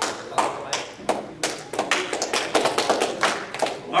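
Scattered applause from a small audience: separate, irregular hand claps, growing denser in the second half.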